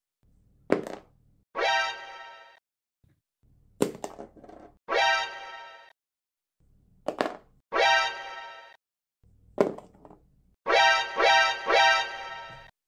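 A die landing on a cardboard box with a short thunk, four times, each followed about a second later by a steady electronic tone lasting about a second. Near the end three of these tones play in quick succession.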